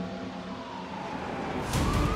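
An emergency-vehicle siren wailing in, its pitch sliding slowly upward, as a music drone fades out. Heavy street traffic noise comes up sharply near the end.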